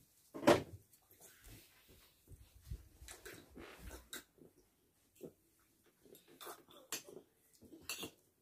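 Spoon and fork clinking and scraping against a bowl while eating, in scattered light clicks. A louder single thump comes about half a second in.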